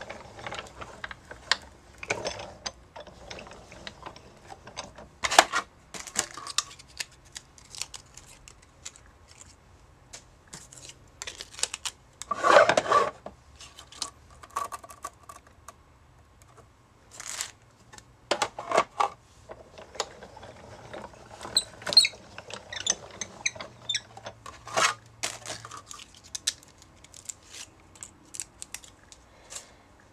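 Clicks, taps and plastic clatter as acrylic cutting plates, a metal snowflake die and glitter cardstock are handled on a hand-cranked Sizzix Big Shot die-cutting machine. The plate sandwich is cranked through the machine's rollers, with a louder scraping stretch near the middle.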